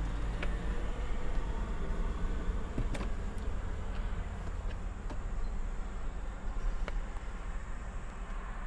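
Steady low vehicle rumble, with a few faint clicks and taps as spice shakers are shaken over a salad container.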